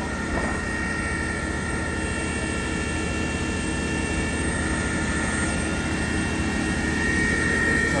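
Fire engines running at a fire scene, their engines and pumps making a steady drone with a constant high-pitched whine.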